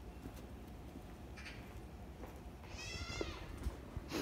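Two short, high-pitched animal calls over faint street noise: a faint one early and a clearer one about three seconds in.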